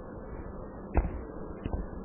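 Stylus tapping on a tablet while handwriting: one sharp tap about a second in and a few lighter taps near the end, over a steady background hiss.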